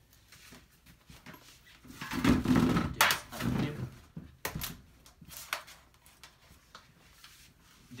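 Handling noise as a hot glue gun is fetched: rustling and clatter for about two seconds with a sharp click in the middle, then a few lighter clicks.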